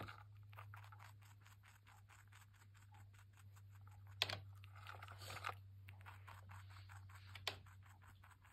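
Small rabbit feeding from a plastic bottle cap: a fast, faint run of tiny nibbling clicks and scrapes, with two sharper clicks, one about four seconds in and one near the end.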